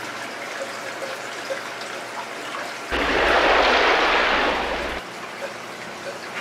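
Water from an airline-tubing siphon trickling into a plastic bucket. About three seconds in, a louder rush of water noise starts abruptly and stops about two seconds later.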